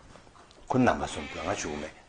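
Speech only: a man talking, starting about two-thirds of a second in after a brief pause.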